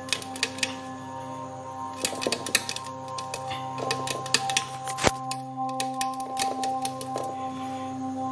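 Irregular sharp clicks and taps of a sun conure chick's claws and beak on its cage as it climbs, with one louder knock about five seconds in. Steady background music with held tones runs underneath.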